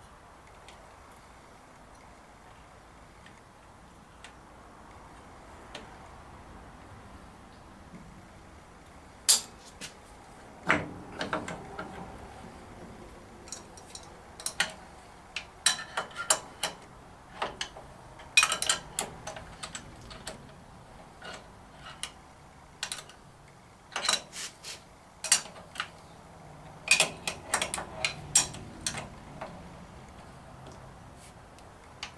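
Metal parts of a motor mount bracket clinking, tapping and knocking against each other as they are fitted by hand to a milling machine's head. After several quiet seconds, an irregular run of sharp clinks starts about nine seconds in and continues to the end.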